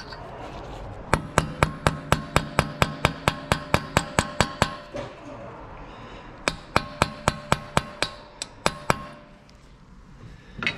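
Hammer blows on the centre of a Honda Accord's front wheel hub, knocking the CV axle loose: a fast run of ringing metal-on-metal strikes, about five a second, starting about a second in, then a second, shorter run after a short pause.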